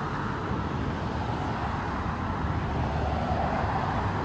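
Steady background rumble of road traffic, with no single vehicle standing out.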